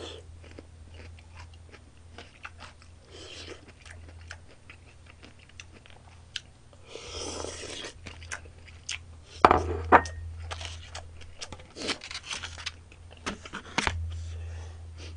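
Close-miked chewing and crunching of food, with wet mouth clicks throughout and a few sharper clicks near the end.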